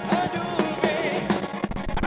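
Live band playing, with a male lead singer singing into the microphone over drums keeping a steady beat.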